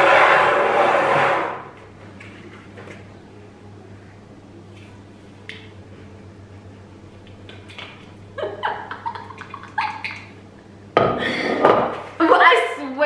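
Plastic bowls and paper plates handled on a table: a loud, noisy rustle or scrape in the first second and a half, then a few light knocks. Short bits of voice come near the end.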